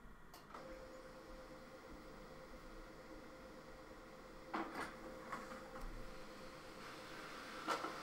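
Home printer starting up and printing: a faint steady hum begins about half a second in, and from about four and a half seconds on come several clunks and clicks of the paper feed, the loudest near the end.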